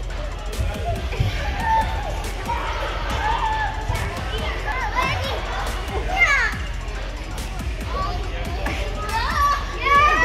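Children's voices calling and shouting in the background of a busy play hall, over music and a steady low hum.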